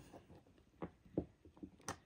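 A few faint clicks and taps as a plastic safety-nose backing is pressed down onto its post with a tipless stylus, the sharpest click near the end.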